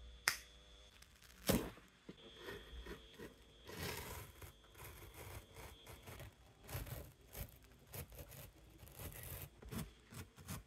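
Two sharp clicks in the first two seconds, then a folding pocket knife's blade slicing along packing tape on a cardboard box, with irregular scratchy crackles as it cuts.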